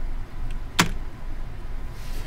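A single sharp click a little under a second in, a computer mouse click advancing the presentation slide, over a steady low hum of room noise.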